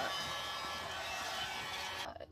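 Hand-held hot-air dryer running steadily with a motor whine, blowing hot air onto freshly painted rope laces to dry the paint.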